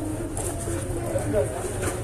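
Indistinct background voices of people talking, over a steady low rumble, with a brief rustle near the end.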